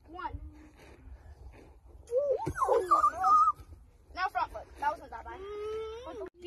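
Children's voices calling out and shouting without clear words. The loudest is a long, sliding call about two to three and a half seconds in, with more short calls near the end.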